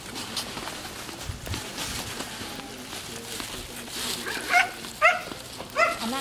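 A dog barking: three short, high-pitched barks starting about four and a half seconds in, over low outdoor background noise.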